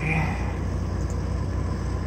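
Steady low engine rumble with a fast, even pulse, the sound of an engine idling.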